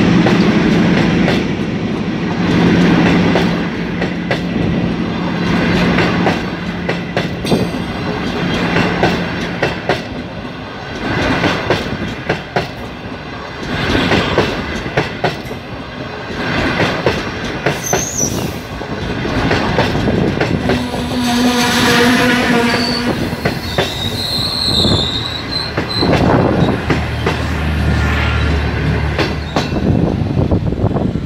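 Chinese-built passenger coaches rolling past close by, their wheels clacking in a steady rhythm over the rail joints. Brief high wheel squeals come in the second half.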